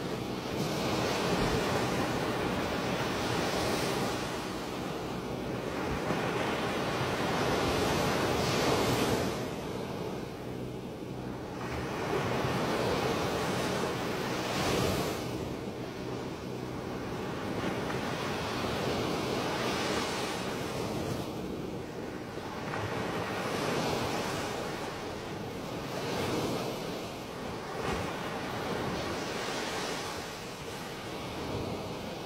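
Heavy, continuous rush of floodwater pouring from open dam spillway gates into a churning river, with wind buffeting the microphone. The level swells and eases every few seconds.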